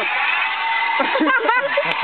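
Several young men's voices talking and calling out over one another, with a quick high rising shout about one and a half seconds in.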